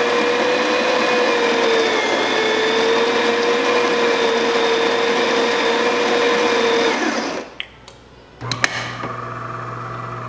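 DeLonghi Magnifica's built-in burr grinder, just repaired, running steadily and grinding beans normally for about seven seconds, then cutting off. A few clicks from the machine follow, and about a second and a half later the pump starts with a low, steady hum as the espresso shot begins to brew.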